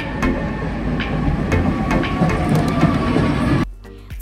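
Low, steady rumble of a street tram with a few scattered clicks, cutting off abruptly near the end.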